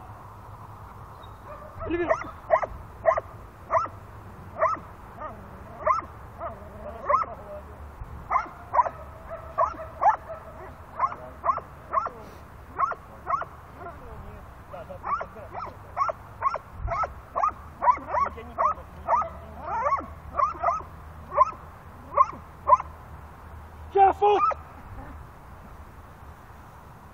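A dog barking steadily at a decoy in a protection-training blind (bark-and-hold), a bit under two barks a second, with a short pause near the middle. The barking stops a few seconds before the end, and a brief spoken command follows.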